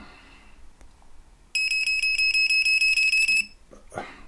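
Magic Finder Bluetooth key-finder tag's buzzer giving a rapid, high beeping, about seven beeps a second, starting about a second and a half in and lasting about two seconds. It sounds as the restarted app reconnects to the tag, a sign that all is well.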